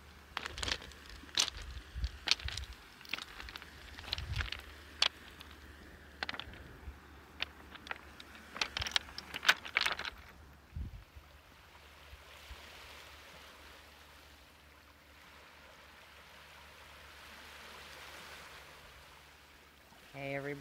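Footsteps crunching on loose, rounded beach pebbles, stones clicking against each other at each step, for about the first ten seconds. Then gentle waves wash onto the pebble shore in a soft, slowly swelling and fading hush.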